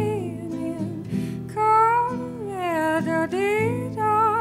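Female voice singing a slow melody with a wide vibrato, sliding between notes, over plucked guitar.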